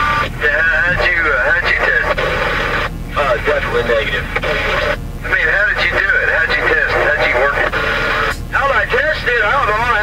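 A voice talking over a two-way radio, thin and narrow-sounding, in phrases with short pauses, over a steady low rumble.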